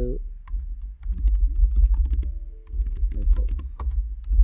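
Typing on a computer keyboard: a run of irregular keystroke clicks over a steady low rumble.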